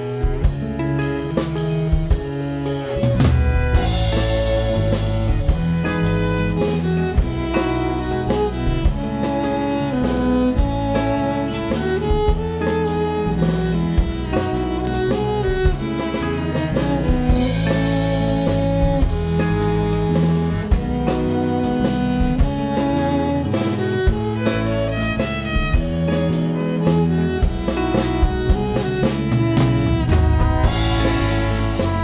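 Live band music with no singing: a drum kit plays a steady beat under a bass line and sustained instrumental parts, the drums and bass coming in right at the start.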